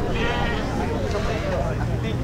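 A sheep bleating once, a wavering call near the start, over the chatter of people at a livestock pen.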